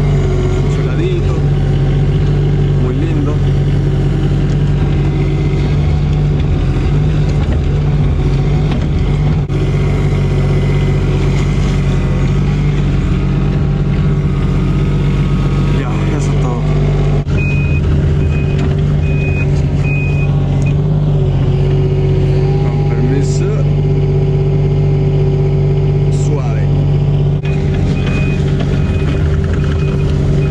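Mini excavator heard from inside its cab: the diesel engine running steadily under load with the hydraulics whining as the boom and bucket dig. A travel alarm sounds a rapid series of even beeps about halfway through and again near the end as the machine tracks.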